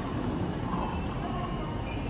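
Steady low rumble and hum of a railway station platform, with no distinct events.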